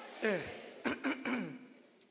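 A man clearing his throat into a handheld microphone, a few short rasping clears mixed with brief vocal sounds, his voice hoarse.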